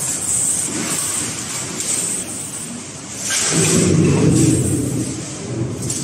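Balls rolling along the steel tube tracks of a large rolling-ball kinetic sculpture, a rumble that swells louder about three and a half seconds in and eases off near the end.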